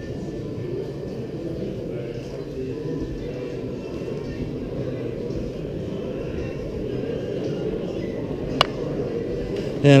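Indistinct chatter of many people talking in a large hall, at a steady level, with one sharp click about eight and a half seconds in.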